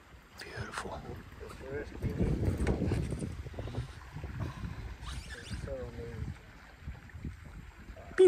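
Uneven low rumble of wind buffeting the microphone, heaviest about two to three seconds in, under a man's soft voice.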